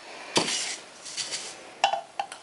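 Powdered fruit drink mix tipped from a sachet into a glass jug of water: a sharp tap about a third of a second in, a faint rustle of the pour, then a light clink against the glass near the end.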